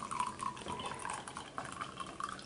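Tea pouring in a steady stream from a stoneware teapot into a ceramic mug.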